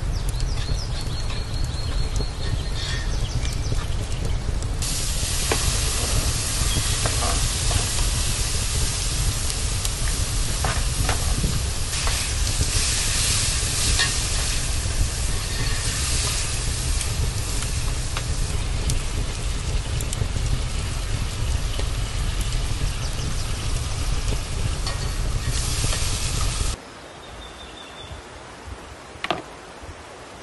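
Diced tomatoes and chopped vegetables sizzling in hot oil in a metal pan over a wood fire, stirred with a spoon that clicks and scrapes against the pan now and then. The sizzling gets louder about five seconds in, over a steady low rumble, and cuts off suddenly near the end.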